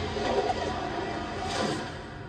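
Movie trailer soundtrack playing from a TV and picked up in the room: music mixed with noisy action sound effects and a few sharp hits.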